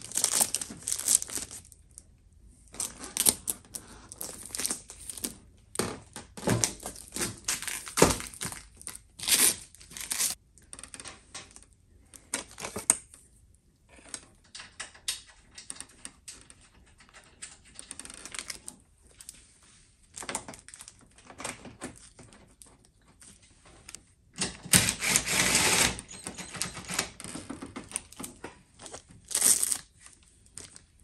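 Crinkling of the plastic protective wrap on a new headlight assembly, with scattered clicks and knocks as the housing is handled and pushed into place on its guide pins. A louder rustling stretch of about a second and a half comes near the end.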